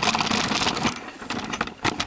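Handling noise from a hand-held camera being moved: uneven rubbing and rustling with small knocks.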